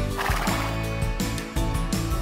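Background music with a steady beat, with a short horse whinny over it just after the start.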